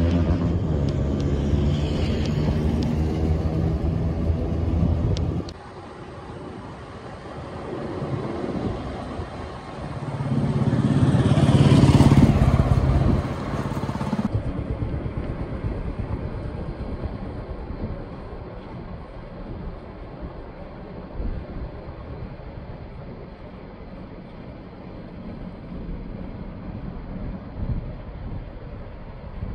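Road traffic heard from a moving vehicle: a steady engine drone for the first five seconds, then quieter. A vehicle passes loudly, swelling to a peak about twelve seconds in. Even wind and road noise follows.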